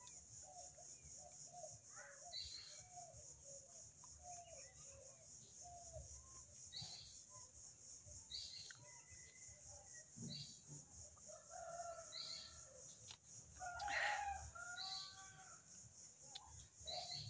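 A rooster crowing, faint, with long calls in the second half, the loudest about 14 seconds in. Short faint clucking calls come before it, over a steady high hiss.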